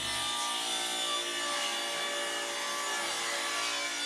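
Table saw ripping a thin strip off a wooden board: a steady whine of the spinning blade with the even noise of the cut.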